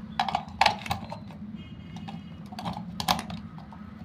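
AA batteries being fitted into the plastic battery compartment of a toy RC remote control: a handful of sharp plastic clicks and knocks against the spring contacts, loudest near the start and about three seconds in, over a steady low hum.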